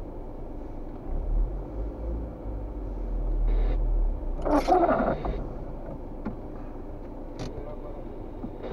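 Low rumble of the camera car's engine and tyres, heard from inside the cabin, swelling as the car creeps forward for a few seconds and then settling back as it stops. A brief voice sound comes about four and a half seconds in.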